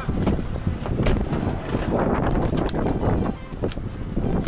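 Wind buffeting a phone's microphone outdoors: a steady rumbling noise, with a few short clicks over it.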